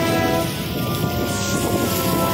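Music with held tones playing over steady rain-and-thunderstorm noise.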